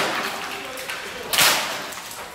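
Wooden school furniture being smashed against a concrete floor: a sharp crack at the start and another, louder one about a second and a half in, each dying away quickly.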